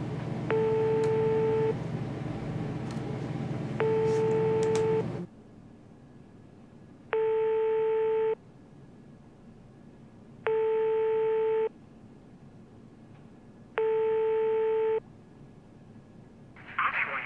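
Telephone ringback tone heard on a call: five long, even beeps of one pitched tone, each lasting just over a second and coming about every three seconds, while the call rings unanswered.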